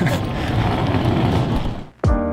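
Outdoor noise with wind buffeting the microphone, and a short laugh near the start; it fades out just before the end.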